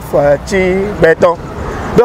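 A man talking animatedly in short, loud phrases with brief pauses between them.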